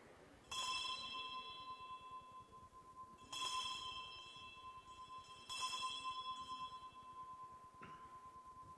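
Altar bell struck three times during the elevation of the chalice at the consecration, each strike ringing on and fading slowly.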